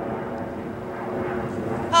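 Young people's voices holding one long, steady sung note that swells slightly toward the end.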